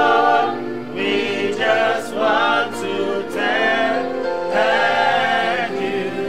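Gospel singing without instruments: a man's voice leads in phrases of long held notes, with other voices holding lower notes beneath.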